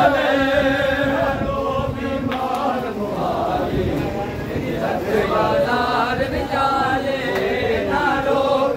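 A chorus of men chanting a noha, a Shia mourning lament, together in a crowd, many voices overlapping in a sustained, wavering chant.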